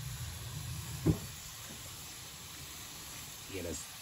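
Steady sizzling hiss of raw ribeye steak searing on a hot charcoal grill grate over white-hot coals, with a short spoken word about a second in and another near the end.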